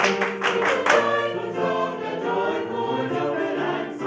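Small mixed vocal ensemble singing in harmony, with the singers clapping a quick rhythm for about the first second; the clapping stops and the voices carry on in held chords.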